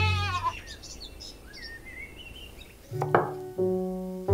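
Goat bleating: a quavering call that trails off about half a second in, followed by fainter, higher calls. About three seconds in, piano notes come in as background music, louder than the bleating.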